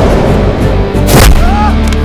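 Loud dramatic film score for a fight scene, with one sharp impact hit a little over a second in.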